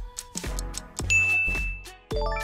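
Background music with a regular beat; about a second in, a bright single ding sounds over it and rings for most of a second, the quiz timer's signal that time is up.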